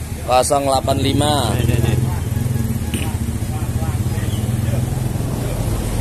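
An engine running steadily nearby, a continuous low hum. A person's voice speaks briefly near the start.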